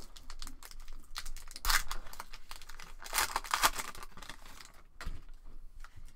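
Foil wrapper of a 2017 Panini Prizm football card pack being torn open and crinkled by hand, in a few uneven rips, the loudest about a second and a half in and again around three seconds in.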